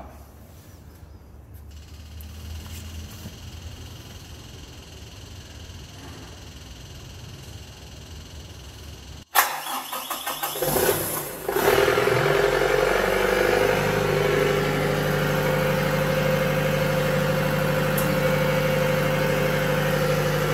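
A faint low hum, then about halfway through a Kubota V3800T four-cylinder turbo-diesel generator set cranks and starts, catching within two or three seconds and settling into a loud, steady run.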